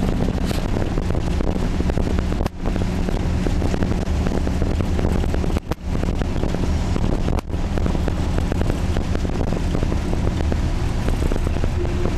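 Engine and road noise heard from inside a moving vehicle: a steady, loud rumble with a low hum, mixed with wind on the microphone. The sound dips out briefly three times.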